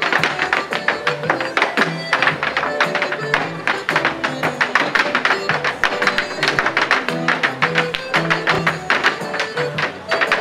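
Irish step dancers' hard shoes clicking and stamping in rapid rhythm on a portable wooden dance board, over recorded dance music from a small loudspeaker.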